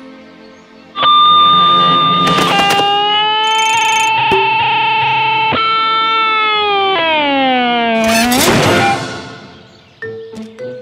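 Soft background music gives way, about a second in, to a loud distorted electric guitar holding long notes that bend and step in pitch. Near the end the guitar dives down in pitch, swells into a noisy screech and dies away.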